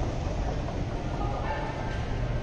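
Steady low rumble of a subway station, heard from the top of an escalator.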